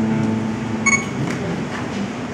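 Acoustic guitar chord ringing out and slowly fading, with a brief high clink about a second in.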